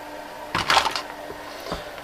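A clear plastic tub of loose 18650 lithium cells being handled and set down: a short clatter of cells and plastic about half a second in, then a single click near the end.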